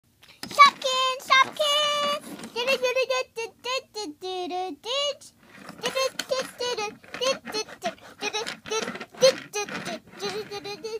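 A child's high voice speaking and singing in a sing-song way, with a few held notes about a second in.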